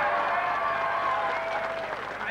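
Hall audience applauding, over a long held musical note that stops near the end.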